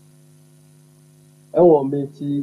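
Steady low mains hum; a man starts speaking about a second and a half in.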